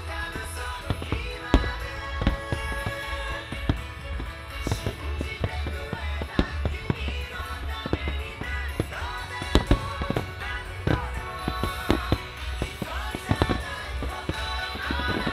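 Aerial firework shells bursting in a rapid, irregular series of sharp reports, with music playing alongside.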